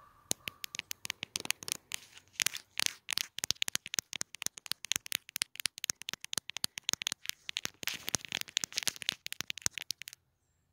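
Fingertips tapping rapidly and irregularly on a camera lens right against the microphone, a dense run of sharp close clicks with some scratching, stopping abruptly at the end.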